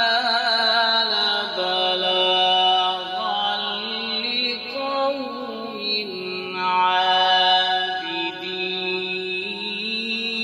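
A man's solo voice chanting a melodic Islamic recitation, holding long notes with wavering ornaments and slow glides from one pitch to the next.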